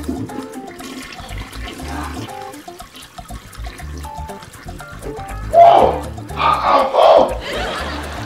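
Background music with a steady low beat. A toilet flushes loudly in the second half.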